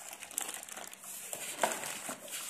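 Clear plastic wrapping around a telescope tube crinkling as hands grip and shift the tube: a run of irregular crackles, with a sharper one past halfway.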